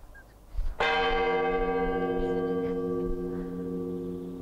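A church bell struck once, about a second in, ringing on with a long, slowly fading tone.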